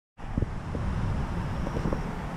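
Wind buffeting a handheld camera's microphone in a low, uneven rumble, with a few soft knocks from the camera being handled near the start.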